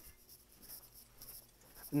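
Faint rustling and scratchy handling noise, with a few light scuffs around the middle.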